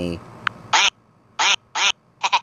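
Keyboard app sound effects played through a phone speaker: three short, squeaky cartoon key-press sounds, one after another, with gaps between.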